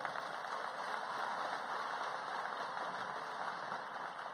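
Audience applauding, a dense, steady clapping that begins to die away near the end.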